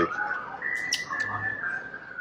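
A high whistled tone held on a few notes in turn: it steps up about half a second in, then dips slightly and holds. There are a couple of faint clicks about a second in.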